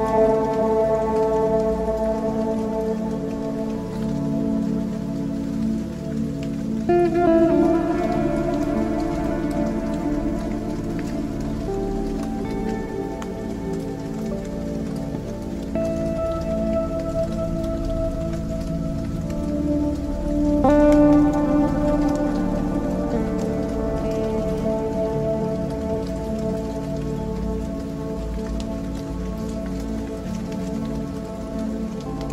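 Ambient music of long held chords that change every few seconds, over a steady rain-like patter.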